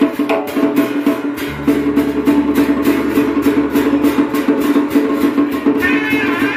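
Vietnamese traditional funeral-rite ensemble music: a fast, even clacking percussion beat of about five strikes a second over drums and a plucked-string accompaniment. A deep held bass note comes in about a second and a half in.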